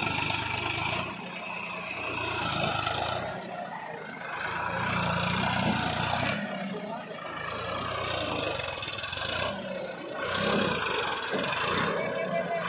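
Tractor diesel engine revving in repeated surges, each swell lasting a second or two before dropping back, as it strains to pull a stuck trolley out of soft soil.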